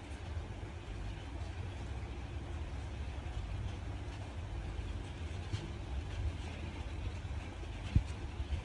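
Steady low background rumble, with a few faint light ticks.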